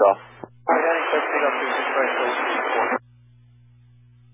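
A transmission on a VHF airband radio feed that comes through as about two seconds of rushing static, starting just under a second in and cutting off suddenly. After it there is a faint steady low hum.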